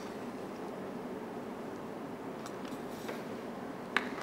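Quiet room tone with faint handling noises from a plastic water bottle. It ends with a sharp click as the bottle's screw cap goes back on.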